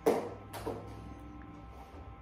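Two knocks, the first loud and sharp right at the start and a weaker one about half a second later, over a steady hum.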